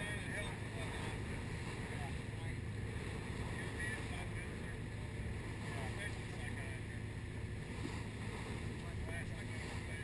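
A small motorboat's engine running steadily underway, an even low hum with water and wind noise around it.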